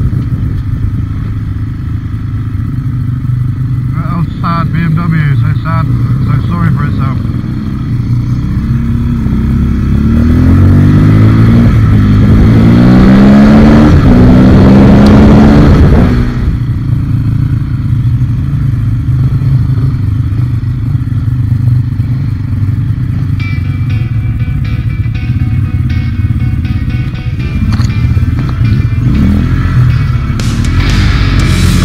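Off-road trail motorcycle engine heard from the rider's helmet camera while riding. Between about ten and sixteen seconds in it revs up through the gears, the pitch climbing and dropping at each shift, then settles to a steadier, quieter run.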